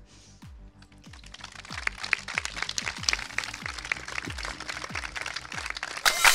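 Audience applauding, the clapping building up over the first couple of seconds and then holding steady. Background music with a steady low beat fades in underneath.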